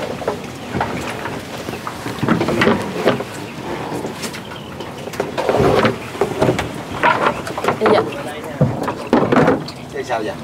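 Scattered knocks and rustling from work in a small boat among water hyacinth: a pole and net fish traps being handled against the hull, with brief voices in between.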